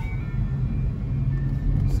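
Inside a moving car with the windows open: a steady low hum of the car's engine and road noise, with street traffic sounds coming in from outside.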